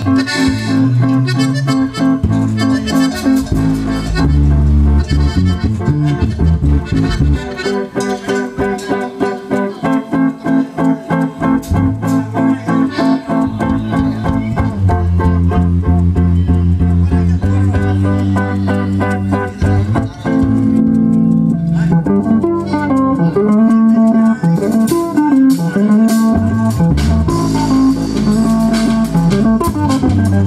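Norteño band music played live: an accordion melody over bajo sexto strumming and a bass line.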